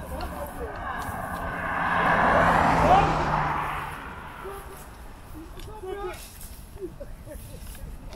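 A vehicle passing on the road: its engine and tyre noise build, peak about three seconds in with a slight drop in engine pitch, and fade away by about four seconds. Brief voices follow in the second half.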